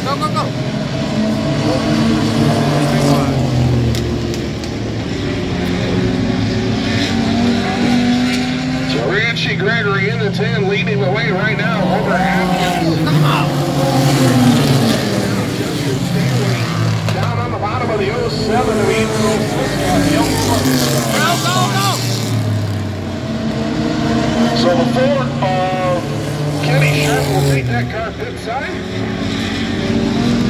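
Several Renegades-division race car engines running around a short oval, their pitch rising and falling as the cars pass and change speed.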